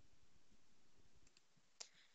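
Near silence with faint clicking and tapping of a stylus on a pen tablet during handwriting, and one sharper click shortly before the end.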